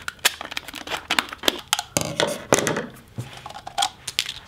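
Scissors snipping at a rubber balloon inside a set gelatine shell, with the shell crackling as it is handled: a string of sharp, irregular clicks and crackles as the balloon is cut free of the gelatine dome.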